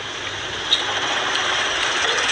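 Steady street background noise with a faint engine running, and a single small click about three-quarters of a second in.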